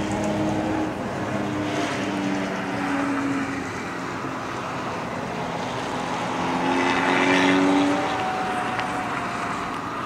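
An engine humming, its pitch shifting in small steps, with a louder stretch about seven seconds in.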